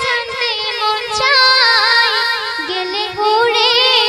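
A young girl singing a Bengali gazal solo into a microphone, drawing out a long melodic line with quick wavering ornaments in the pitch.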